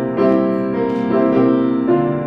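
Piano-voiced keyboard playing the opening of a hymn in held chords, with a new chord struck about every half second.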